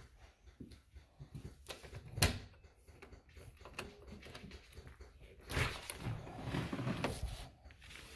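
Scattered knocks and clicks from someone walking through a house with the camera, one sharp click about two seconds in, then a longer rustling stretch near the end as she heads outside.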